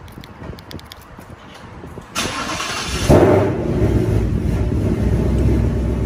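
A 2018 Ford Mustang GT's 5.0-litre Coyote V8, running on E85 with catted headers, cold-started. The starter cranks for about a second starting two seconds in, then the engine catches with a loud flare about three seconds in and settles into a steady fast idle.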